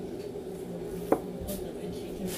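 A knife slicing through meatballs and knocking once, sharply, on a thick wooden chopping block about a second in, over a steady low hum.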